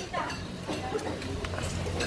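Indistinct low voices with a few light clicks, like a spoon tapping a dish.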